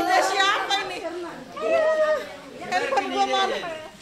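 Several people chatting at once, overlapping voices with no clear words.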